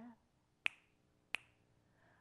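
Two sharp finger snaps about two-thirds of a second apart, keeping a steady beat in the pause between lines of a cappella singing; a sung note dies away just at the start.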